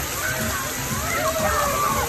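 Splash-pad water spouts pouring and spraying onto the wet ground in a steady splashing rush, with children's voices calling out over it.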